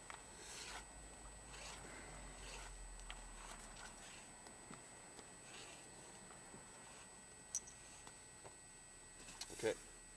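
Faint soft swishes and rustles of a rope being handled and coiled into loops, with one sharp click about seven and a half seconds in.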